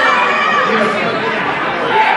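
Wrestling crowd chattering and calling out, many voices overlapping in a steady hubbub.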